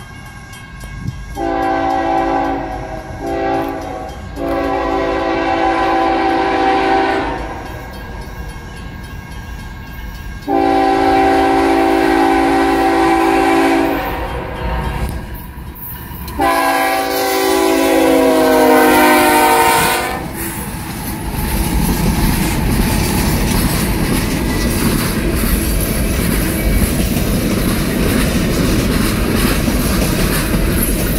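A CSX GE ES44AH diesel locomotive's multi-chime air horn sounds for the road crossing as the train approaches. There is a blast of about six seconds broken twice, then two long blasts of three to four seconds each. From about twenty seconds in, the locomotives pass working hard in notch 8, with a heavy engine rumble that gives way to the steady rolling clatter of the freight cars.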